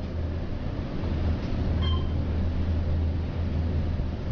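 1972 Otis gearless traction elevator car travelling at high speed, giving a steady low rumble of ride noise inside the car that grows a little louder about a second in. A brief high beep sounds about two seconds in.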